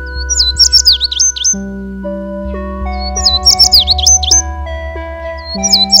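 Background music of soft held chords, with a short high chirping bird phrase laid over it, repeated identically three times about every two and a half seconds.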